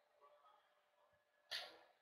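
Near silence: faint room tone on a webinar microphone, broken by one short, sharp noise about one and a half seconds in that dies away within a fraction of a second.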